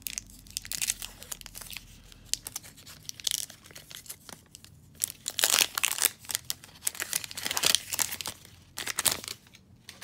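The crimped wrapper of a Topps baseball card pack being torn open and crinkled by hand: a run of crackling rips, loudest in the middle, that stops just before the end.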